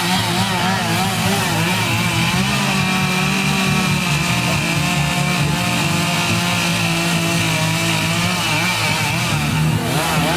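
A Stihl two-stroke chainsaw engine running throughout. Its pitch rises and falls in the first couple of seconds and again near the end, and holds steadier in the middle.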